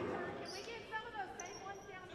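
Sounds of an indoor basketball game in progress: voices calling out on and around the court, with short high sneaker squeaks on the hardwood floor.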